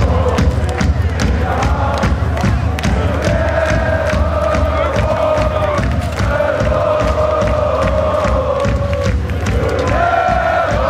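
A live punk band playing loudly with a steady drum beat, and a crowd singing or chanting along in long held notes, with cheering.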